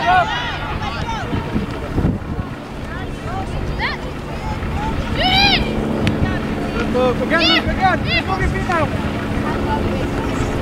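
Scattered shouts and calls from players and the sideline across an open soccer field, loudest about halfway through and again near the end, over wind rumbling on the microphone.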